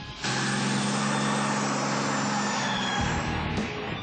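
The Banks Sidewinder Dakota race truck's turbocharged Cummins diesel engine running at steady high revs, with a loud rushing noise over it. The sound starts abruptly just after the start and changes about three seconds in.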